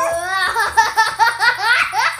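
A young child's held high 'aah' that breaks about half a second in into a run of loud, quick giggling laughter.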